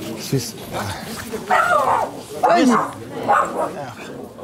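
Pomeranian whimpering in several short, high whines that rise and fall in pitch, starting about a second and a half in. The whimpering comes from seeing a man she knows.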